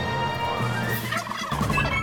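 Wild turkey gobbling, a quick warbling call about a second in, over background music that grows fuller near the end.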